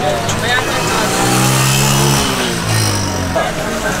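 A motor vehicle passing close by, its engine note and road noise swelling to a peak about halfway through and fading about three seconds in.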